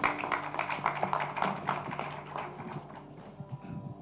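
Audience applauding, the claps thinning out towards the end.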